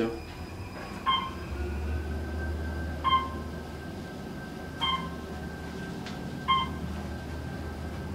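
Otis Series 2 traction elevator car travelling down, a steady low hum of the ride, with a short electronic beep about every two seconds as it passes the floors.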